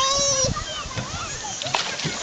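A small child's high voice calling out, held for about half a second, followed by splashing of bare feet in shallow water and mud, with further faint child voices.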